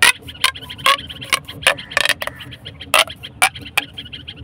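Plastic pop tube fidget toy being stretched and squeezed by hand, its ridged corrugations snapping open and shut with about ten sharp popping clicks at an uneven pace.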